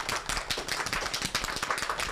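A small group of people clapping, many quick overlapping claps in an irregular patter.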